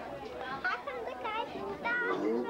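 A young child's high-pitched voice chattering and babbling, with other voices around it.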